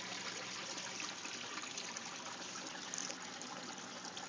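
Steady trickle of water running through a small pump-fed aquaponics setup, water flowing through a homemade swirl filter, with a faint steady hum underneath.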